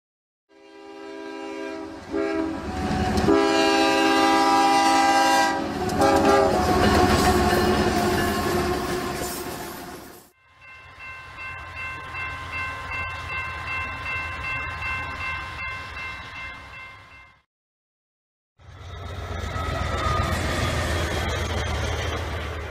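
Freight train locomotive air horn blowing a series of blasts over the rumble of the train, fading out about ten seconds in. After a short gap a steady chord of high notes sounds for about seven seconds over a rhythmic rumble. After a second of silence, train rumble fades in again.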